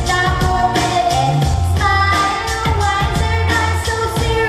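A pop song sung into a microphone over accompaniment with a steady beat and heavy bass, amplified through a hall's sound system.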